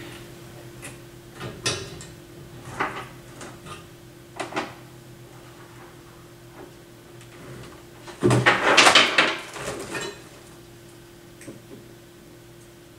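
Things being handled on a workbench: scattered light clicks and knocks, then a louder, longer rustling clatter about eight seconds in. A steady faint hum runs underneath.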